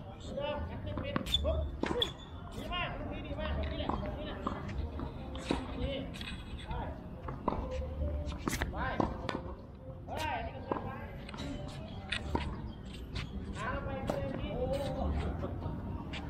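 Tennis ball bouncing on a hard court and struck with a racket, in a run of sharp clicks, while voices talk throughout.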